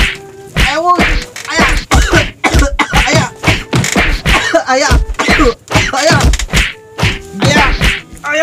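Repeated whacks of grass brooms and a stick striking a person, about two a second, mixed with shouts and cries.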